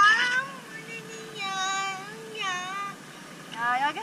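A young girl crying in fear: a run of high, wavering wails with short gaps between them, loudest at the start and again near the end.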